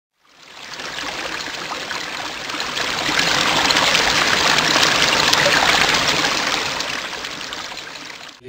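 Flowing, trickling water sound effect that fades in, swells for a few seconds and eases off, with faint ticks running through it.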